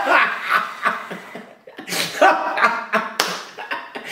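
A man laughing in short broken bursts, with one sharp click about three seconds in.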